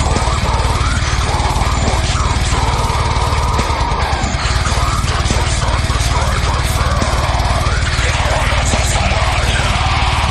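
Slam metal music: heavily distorted guitars over fast, dense drumming, playing loud without a break.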